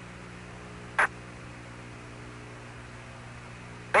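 Open radio channel from the lunar surface: steady static hiss with a low mains-like hum, broken once by a short crackle about a second in.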